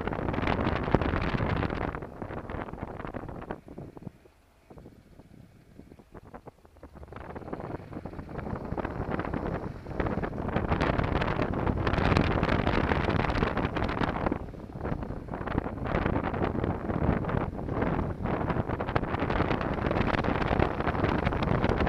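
Wind buffeting the microphone of a moving motorcycle, a rough, fluttering rush. It falls away to near quiet from about four to seven seconds in, then builds back up and stays loud.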